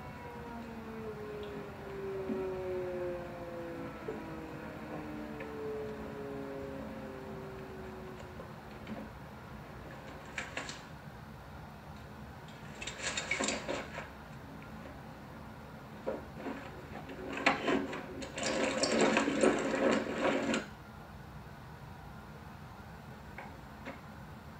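Air-raid siren winding down, its pitch falling slowly over the first eight seconds or so. Then several short bursts of noise follow, the longest about two seconds near the end, over a steady low background.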